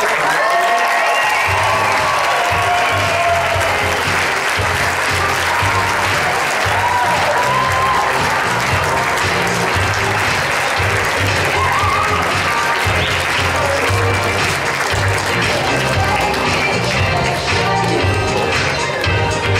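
Wedding guests applauding, with music carrying a steady bass beat coming in about a second in.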